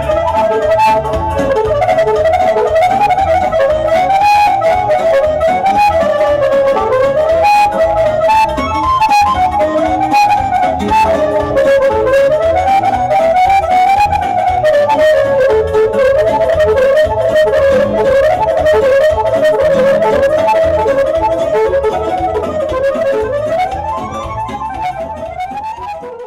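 Live band music: a fast, ornamented woodwind melody over accordion and keyboard with a steady beat, fading out over the last few seconds.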